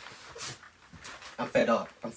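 A man's wordless, whimpering vocal cries, starting about a second and a half in, after a short breathy rush of noise.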